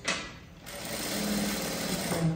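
Industrial single-needle sewing machine running steadily as it stitches fabric, starting about half a second in.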